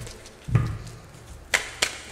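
Tarot deck being shuffled by hand, overhand, cards dropped onto the stack: a soft thud about half a second in, then two sharp card snaps in quick succession near the end.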